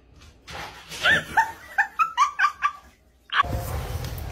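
A dog giving a quick run of about eight short, high yips, each falling in pitch. Near the end the yips stop and a steady background hiss comes in.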